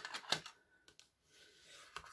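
Thick cardstock being handled on a wooden table: a quick run of light taps and paper clicks in the first half second, then a faint sliding rub near the end.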